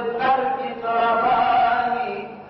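Lebanese zajal sung poetry: Arabic chanting in long held, wavering notes, with a short break in the phrase under a second in.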